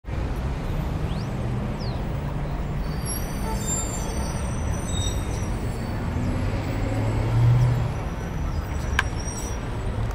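Steady low rumble of road traffic, with a single sharp click about nine seconds in.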